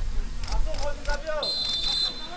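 A referee's whistle gives one short, steady blast about one and a half seconds in, the signal for the free kick to be taken. Players' voices are heard on the pitch before it.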